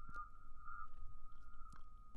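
Steady high-pitched tone just above 1,000 Hz, about 1,200 Hz: an unwanted whine in a voice recording, played back on its own with the speech filtered away.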